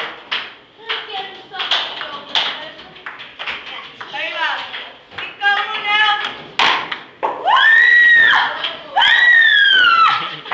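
Voices talking and calling out, with two long, loud, high-pitched shouts near the end and scattered sharp taps between them.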